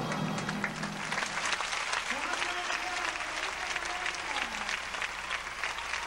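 Arena audience applauding at the finish of a gymnastics floor routine: dense, steady clapping with some voices mixed in.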